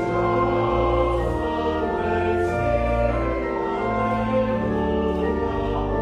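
Pipe organ playing a slow piece of church music in full sustained chords, with deep bass notes and the chords changing about once a second.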